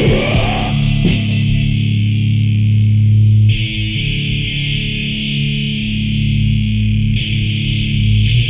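Heavy metal music recorded on a four-track cassette recorder: distorted electric guitar holding low, sustained chords, with a bright upper wash that swells about halfway through and again near the end.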